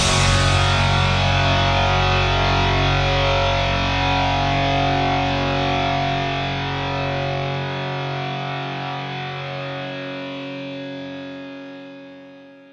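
Final chord of a hard-rock song ringing out on distorted electric guitar over bass, held and slowly fading. The lowest notes drop out about halfway through, and the guitar dies away near the end.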